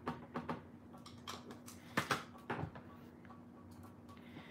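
Irregular taps, clicks and knocks of a stamping platform in use: an ink pad dabbed onto a clear stamp and the platform's hinged acrylic lid brought down onto the card. The loudest knocks come about two seconds in.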